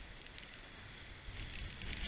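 Light rain ticking and crackling on the camera over a steady low hiss of wind and water.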